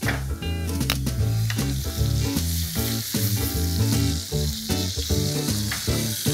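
Butter with thyme, rosemary and garlic sizzling in a hot frying pan, a steady hiss, over background music with stepping bass notes.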